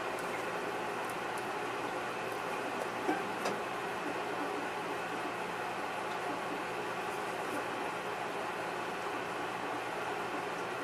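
Steady room noise, an even hiss with a low hum, with a couple of faint clicks about three seconds in.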